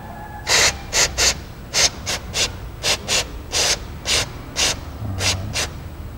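Aerosol engine degreaser sprayed from a can with a thin extension straw, in a rapid series of short squirts of hiss, about two to three a second, with a couple of longer ones. The degreaser is being sprayed onto an oil-caked motorcycle cylinder head to dissolve old oil.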